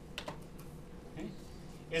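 A few light clicks from the pointing device used to draw on the computer screen: a quick cluster about a quarter of a second in and a fainter click about a second later, over a low steady hum.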